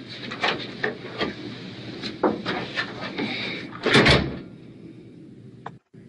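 A door shutting with a thump about four seconds in, after a scatter of small clicks and knocks.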